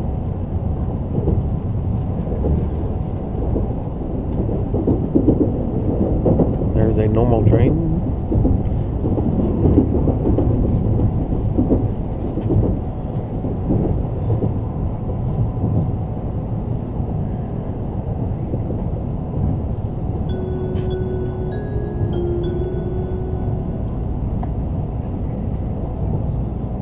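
Steady low rumble and rush of a Shinkansen train running, heard from inside the passenger cabin. Near the end comes a short run of a few stepped, clear notes.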